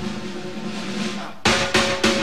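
Rock band playing live and starting a song: a loud opening hit rings out and fades, then a few sharp drum strikes about a second and a half in lead into the beat.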